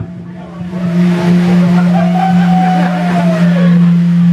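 An amplifier holding one steady low tone after the song stops, with a fainter tone gliding up and back down above it midway, over crowd noise.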